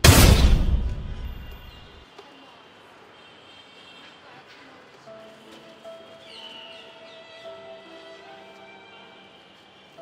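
A loud boom sound effect hits right at the start, its deep rumble dying away over about two seconds. Soft background music with held tones follows.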